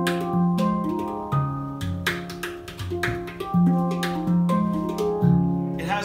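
Steel handpan played with the hands, jumping straight into a rhythmic tune with no build-up. Struck notes ring and overlap, the deep notes loudest and the higher notes sounding between them.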